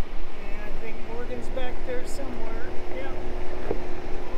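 Pickup truck crawling along a rough dirt road, a steady low rumble with wind noise, and a single knock about three-quarters of the way through as it goes over a bump. Wavering, whine-like pitched sounds ride over the rumble.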